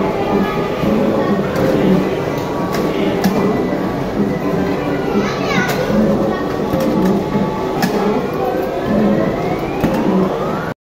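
Amusement arcade din: electronic sounds from many game machines mixed with voices and children's chatter, with a looping electronic pattern and rising electronic glides around five seconds and again from about eight seconds.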